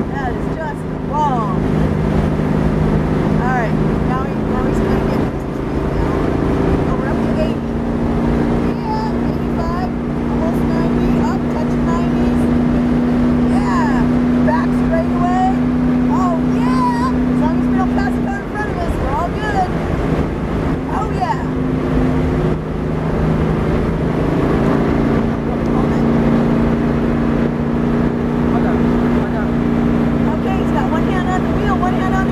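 1971 Pontiac Firebird engine running steadily at speed on track, its note held evenly, easing briefly about eighteen seconds in and picking up again a few seconds later.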